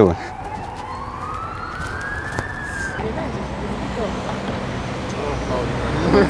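A distant emergency-vehicle siren wailing, rising steadily in pitch over about two seconds and just starting to fall before it cuts off abruptly about three seconds in. Steady street background with faint voices follows.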